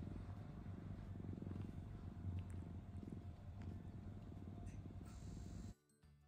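Domestic cat purring close to the microphone, a steady low rumble that swells and eases in a slow rhythm, then stops abruptly near the end.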